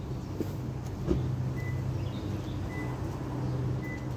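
A vehicle engine idling with a steady low hum, with a couple of short knocks and three faint, short high beeps about a second apart.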